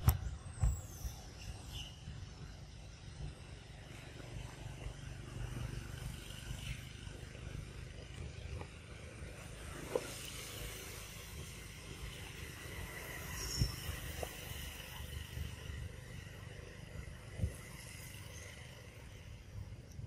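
Outdoor forest ambience: a steady low rumble with faint high chirps, and a few sharp taps scattered through it, the loudest near the start.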